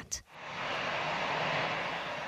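Four-engine Airbus A340 jet airliner taking off: a steady rush of jet engine noise at takeoff thrust, fading in just after the start.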